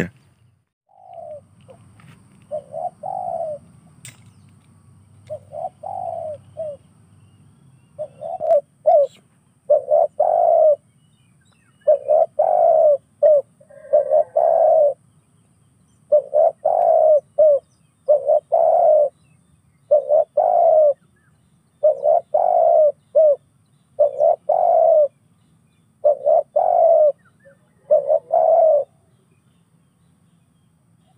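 A bird calling over and over in short, low-pitched phrases, one every second or two, growing louder and more frequent from about eight seconds in.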